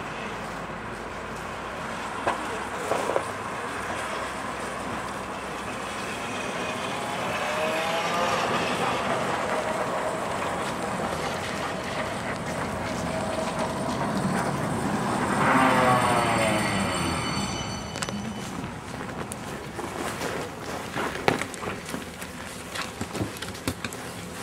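A Moscow LM-2008 low-floor tram approaches on the rails and pulls in to a stop. Its electric traction drive whines in gliding pitch over the running noise of wheels on rail, loudest about two-thirds of the way through. Several clicks and knocks follow near the end.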